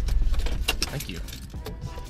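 Car engine rumbling low as the car is parked, with a run of light metallic clicks and jingles over it; the rumble weakens over the second half.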